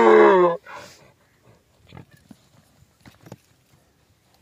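Donkey braying: the last drawn-out note of the bray falls in pitch and stops about half a second in, with a short fainter honk just after. Then only a few faint knocks.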